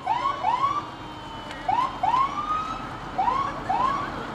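Emergency vehicle siren giving short rising whoops, about seven in quick pairs and threes, one held a little longer about two seconds in, over steady street noise.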